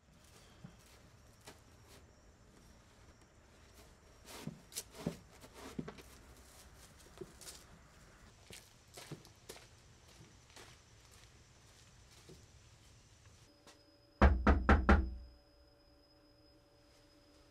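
Knocking on a door: a quick run of about five loud raps near the end. Before that there are a few soft, scattered thumps.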